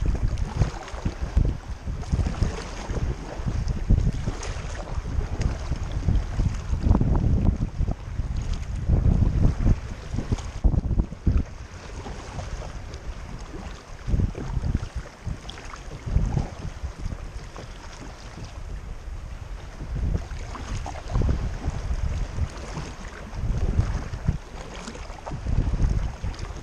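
Wind gusting on the microphone in an uneven low rumble, the loudest sound, over a sea kayak being paddled through the water, with the paddle dipping and water washing along the hull.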